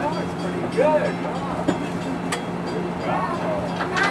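Budd RDC rail car running, a steady low engine hum as it rolls slowly along the track, with people talking over it and a couple of short clicks.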